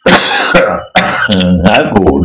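A man clears his throat in a loud, sudden burst, then his speech resumes about a second in.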